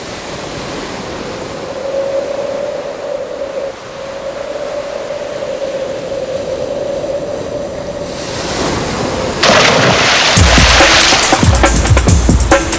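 Ocean surf washing with a steady held musical tone over it. About eight seconds in a rushing sound swells up, and near ten seconds a drum-heavy electronic music track kicks in with a loud bass beat.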